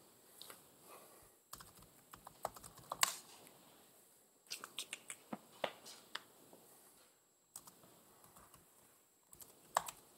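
Laptop keyboard typing: faint, irregular bursts of key clicks with short pauses between them.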